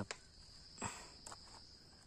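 A steady high-pitched insect trill in undergrowth, with a single brief crunch a little under a second in and a few faint ticks after it.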